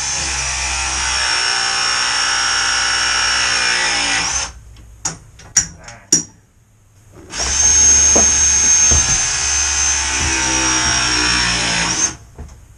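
RIDGID RP340 battery press tool pressing Viega MegaPress fittings onto steel gas pipe: two press cycles of about five seconds each, the motor note sinking slightly as the jaws close. Between them come a few sharp clicks as the jaw is moved to the next fitting.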